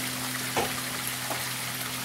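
Steady splashing and trickling of a small backyard waterfall running into a pond, with a low steady hum underneath.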